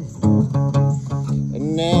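Acoustic guitar strummed and played with a glass slide between sung lines. Near the end a man's voice comes in singing.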